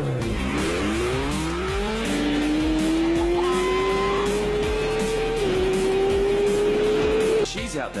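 Sport motorcycle engine accelerating hard from a standstill, revving up through several quick gear changes and then pulling long in a higher gear, with one more shift about five seconds in. The engine sound cuts off suddenly near the end.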